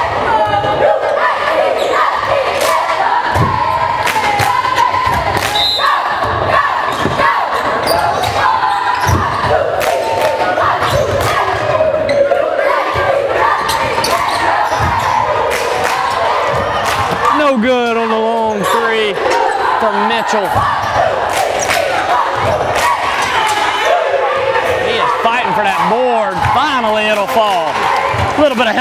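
A basketball being dribbled on a hardwood gym floor, over steady crowd noise from spectators talking and calling out. There are a few loud shouts about two-thirds of the way through and again near the end.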